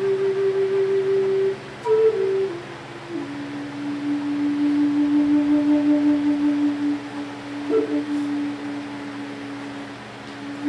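Wooden end-blown flute playing a slow, descending melody: a held note, a few short steps downward about two seconds in, then a long low note held nearly to the end, swelling in loudness midway.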